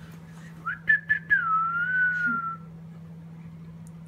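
A person whistling a short phrase: a quick rise to a high held note, then a slow slide down with a waver, lasting about two seconds. A steady low hum runs underneath.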